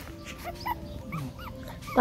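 Young puppies whimpering: a string of short, high, rising-and-falling whines.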